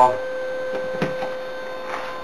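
A steady electrical hum with two short clicks about a second in as a power plug is pushed into a wall outlet.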